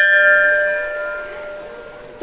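A large hanging brass temple bell struck once by hand, ringing with several steady tones that fade slowly over about two seconds.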